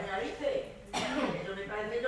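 Stage dialogue, with a short cough or throat-clear about a second in.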